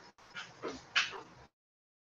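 A few brief, short sounds come over a video-call line, one sliding down in pitch and one sharp burst about a second in. Then the audio cuts out to dead silence about a second and a half in, a dropout in the call's sound during technical problems.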